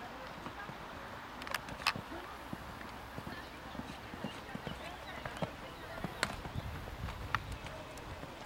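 Hoofbeats of a horse cantering on a sand arena, under indistinct background voices, with a few sharp clicks standing out.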